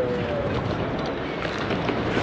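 Steady wind noise on the microphone, a continuous rushing hiss with no distinct events.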